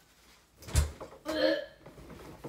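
A dull thump about three-quarters of a second in, then a brief pitched vocal sound from a woman, a short non-word utterance rather than speech.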